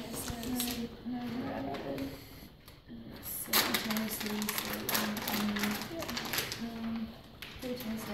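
Indistinct women's voices talking in a room, too low to make out, with some rustling and handling noise that is loudest a little past the middle.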